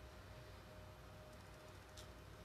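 Near silence: room tone with a faint steady hum and a small tick at the very end.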